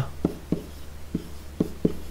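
Stylus writing digits on a drawing tablet: about five short taps and strokes over two seconds, over a steady low hum.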